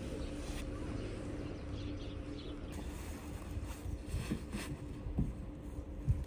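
Quiet outdoor background in the snow: a low steady rumble with a faint steady hum, and a few faint soft knocks in the second half.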